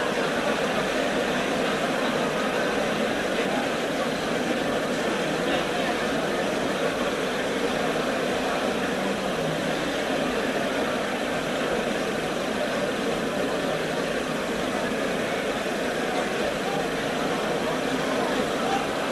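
Steady, even noise with no distinct events, like the hiss and hum of an old recording or a room's background noise.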